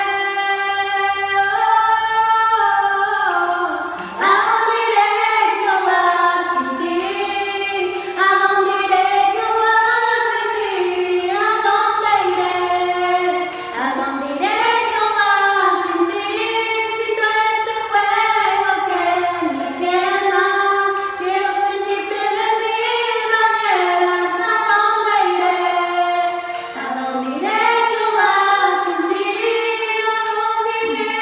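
Two young female voices singing a slow Spanish-language worship song in sustained, gliding phrases.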